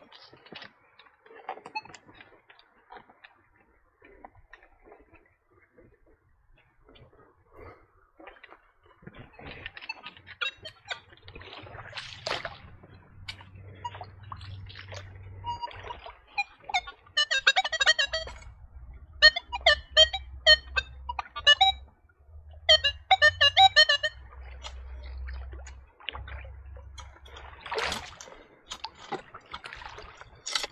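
Nokta Legend metal detector sounding target tones through its speaker in three bursts of rapid, buzzy beeping in the second half, over the splashing of water as the searcher wades and digs with a scoop.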